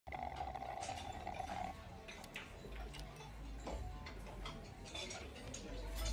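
Quiet diner room background: scattered light clicks and ticks over a low rumble, with a steady tone in the first second and a half.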